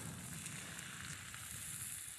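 Faint, steady sizzling from a cast-iron pot of fish stew cooking over charcoal.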